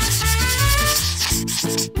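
Scratchy, rubbing brush-stroke sound effect for a paint-stroke scene transition, lasting about a second and fading out, over background music.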